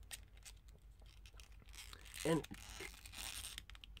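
Small plastic clicks and rubbing as a plastic hat is worked onto the head of a 5-inch action figure by hand, a tight fit that is slightly difficult to pop on.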